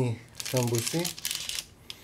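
Baking parchment crinkling and crackling as a hand lifts a baked sambusa off a paper-lined baking tray, a run of fine crackles lasting just over a second.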